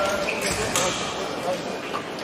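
Busy sports hall with voices from several fencing bouts and a few sharp thuds in the first second, the sound of fencers' feet striking the pistes.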